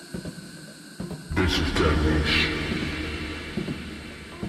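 Radio-show ident sound effect: a deep boom with a whooshing sweep hits about a second and a half in, a second swish follows, and the low rumble slowly fades.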